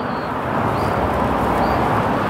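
Steady outdoor rushing noise with a few faint, short high chirps.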